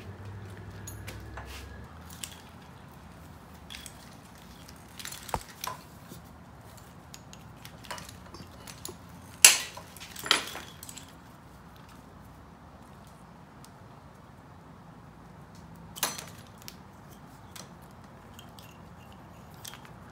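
Plastic wiring-harness connectors being pressed and pulled apart by hand, with scattered clicks and light rattling of wires. The two sharpest clicks come about nine and a half and sixteen seconds in.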